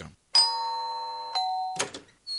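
Two-note ding-dong chime: a ringing higher note followed about a second later by a lower one, with a short click just before the end.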